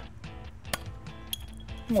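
Glass beer bottle being opened by hand without a pop: a sharp click a little before the middle, then a glassy clink that rings briefly. Background music plays underneath.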